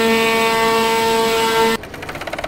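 Automatic CNC cutting table running as its head cuts a sheet of fluorescent yellow material: a loud, steady machine whine with several overtones. Near the end it cuts off and an industrial sewing machine stitches rapidly, with fast even ticks.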